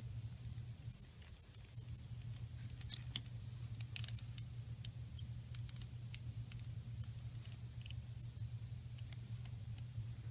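Faint scattered clicks and light rustles of hands handling a plastic 1/6-scale action figure and its small toy pistol, over a steady low hum.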